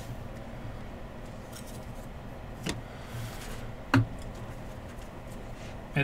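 Trading-card pack being opened by hand: two small clicks and a brief soft rustle as the silver pack is handled and the cards are slid out, over a low steady room hum.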